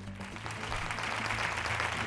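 Studio audience applause building up over a steady background music bed, greeting a correct answer.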